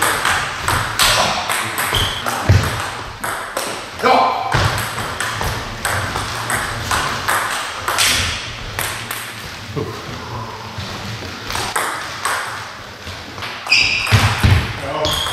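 Table tennis rallies: the ball clicking back and forth off the rackets and the table in quick, even succession, in runs broken by short pauses between points.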